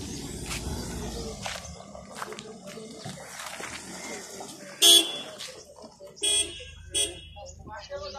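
A vehicle horn giving three short toots: a loud one about five seconds in, then two more within the next two seconds. Voices murmur in the background.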